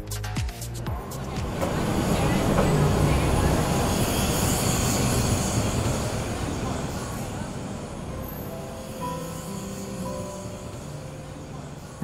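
Busy city street ambience: traffic noise and the hubbub of passers-by, swelling over the first few seconds and then slowly fading. A music beat cuts off in the first second, and soft piano notes come in near the end.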